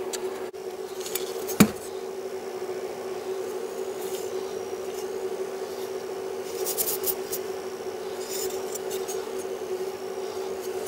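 Clicks, light metal clinks and rubbing as an old Lakeside No. 7 cast-iron hand plane is handled. There is one sharp knock about one and a half seconds in and a few more clicks near the end, over a steady low hum.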